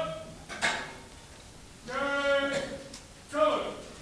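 Drill commands called out by a color guard in long, drawn-out shouts, with sharp clacks of rifles being brought up in the manual of arms.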